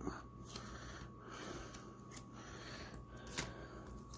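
Faint handling of trading cards in a rigid plastic top loader: light rubbing with a few scattered soft ticks as the cards are slid out. A faint steady tone runs underneath.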